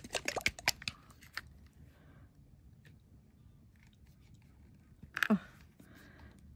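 Plastic squeeze bottle of gold acrylic paint being handled and worked at the nozzle: quick clicks and crackles for the first second or so, then faint taps. A short voice sound, falling in pitch, comes about five seconds in. The nozzle is blocked.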